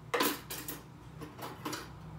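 Kitchen dishes and utensils knocking and clinking: one sharp knock at the start, then several lighter knocks over the next second and a half.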